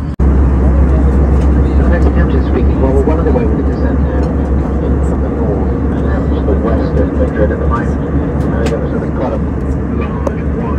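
Steady low drone of an Airbus A320 cabin in cruise, engine and airflow noise, with indistinct voices over it. The sound drops out for an instant just after the start and comes back louder.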